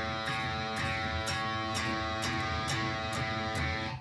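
Electric guitar's A string picked repeatedly, about two strokes a second, with the note ringing on between strokes. The picking spot shifts along the string, so the tone moves between bassy and dull and bright and harsh.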